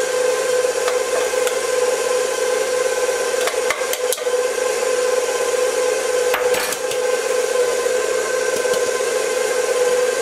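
Stand mixer motor running steadily at one constant pitch while beating pound cake batter as flour and buttermilk are worked in, with a few light clicks along the way.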